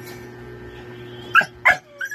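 Two short, sharp yelps about a third of a second apart, the second falling in pitch, over a steady low hum.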